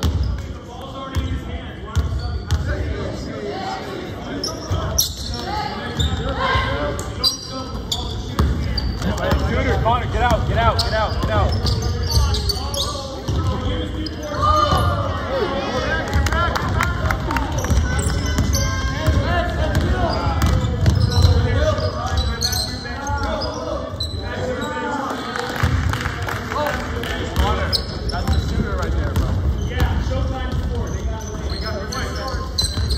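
A basketball dribbling and bouncing on a hardwood gym floor during play, with sneakers squeaking on the court in bursts, most busily in the middle of the stretch, all ringing in a large gym.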